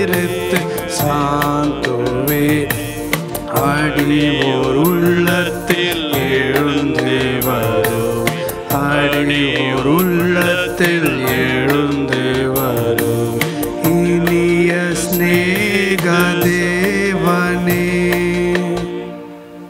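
Devotional hymn sung with instrumental accompaniment: a gliding vocal melody over held lower notes, with frequent percussive strikes.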